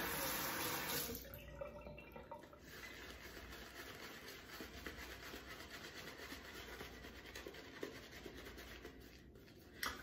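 Tap water runs briefly for about the first second, wetting the shaving brush. After that, a synthetic-knot shaving brush works a thirsty shaving soap into lather on the face, giving a faint, steady brushing and rubbing sound.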